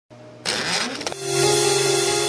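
Opening of a dubstep track: a rising noise sweep with an upward-gliding tone, then, about a second in, a held low synth note with a second note above it.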